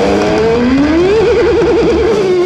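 Heavy metal band playing live: a distorted lead electric guitar slides up in pitch, then holds a note with wide, fast vibrato over drums and rhythm guitar.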